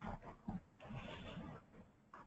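Faint speech off the microphone, too low to make out any words.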